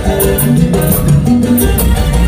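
Live Latin tropical band music from a cumbia group, loud and continuous: a steady dance beat of bass guitar and congas, with regular bright percussion strokes and sustained melodic tones above.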